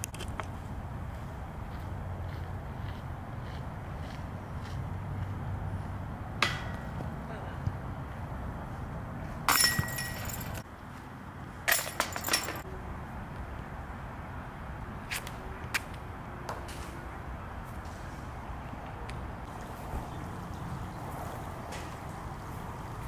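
A disc golf basket's metal chains and tray jingling and clanking as discs hit and drop in. There are two bursts of ringing metal, the first about nine and a half seconds in and the second about two seconds later.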